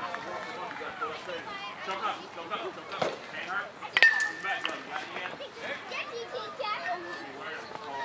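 Voices chatter in the background. A knock comes about three seconds in, then about four seconds in a sharp metallic ping rings briefly as a metal baseball bat hits a pitched ball.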